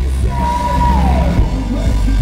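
Live rock band playing, with a male lead vocal yelled and sung over guitars and drums. The voice holds one high note, then slides down in pitch.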